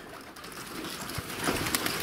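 Flock of domestic pigeons around the loft, with wings flapping as several take off near the end; the sound grows louder in the last half-second.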